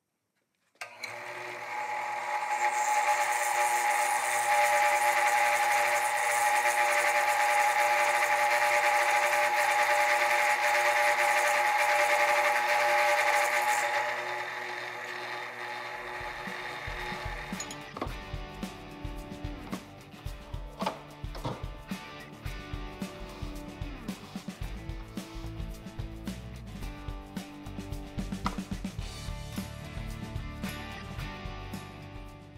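Drill press running a quarter-inch end mill through a block of aluminum: a steady machine whine with a cutting hiss, from about a second in until it fades at about the halfway point. Background guitar music then plays to the end.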